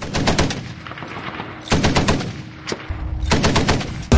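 Vehicle-mounted heavy machine gun firing in short rapid bursts, three bursts and a single shot.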